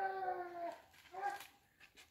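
Hunting dog baying: one long held call, falling slightly, then a shorter one about a second in.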